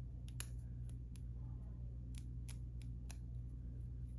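Faint, irregular small clicks, about a dozen, over a steady low hum: fingers plucking loose fibres from a marabou feather at a fly-tying vise.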